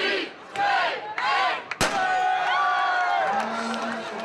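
A large crowd chants the last numbers of a countdown in unison, and a starting pistol fires a single sharp shot about two seconds in to start the run. The crowd then shouts and cheers.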